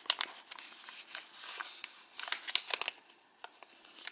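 A sheet of origami paper crinkling and crackling as fingers press and pinch it along its creases to collapse it. There is a louder cluster of sharp crackles a little past the middle, then only faint rustles near the end.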